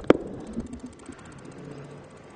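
Two sharp clicks a tenth of a second apart right at the start, then low, steady hall room noise.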